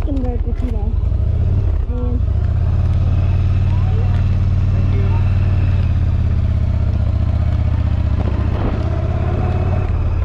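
Yamaha V Star 1100 Silverado's V-twin engine, heard from the pillion seat, picking up about two seconds in and then running steadily as the bike rides along, with a low drone.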